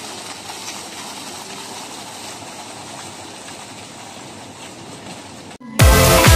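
Steady splashing of a fountain's water jets falling into their pool. Near the end this cuts off abruptly, and loud music with a steady beat begins.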